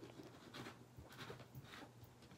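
Near silence, with faint rustles and a few light taps as hands move paper and supplies on a craft mat.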